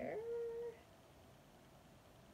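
A cat meowing once, a short steady call that stops under a second in.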